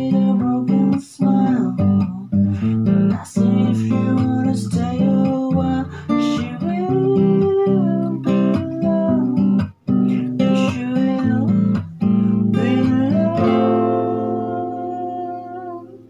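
Acoustic guitar strummed with a capo, playing chords in a steady rhythm. Near the end a last chord is left ringing and fades away.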